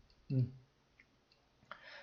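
A man's short hummed "mm", then quiet with one faint click about a second in.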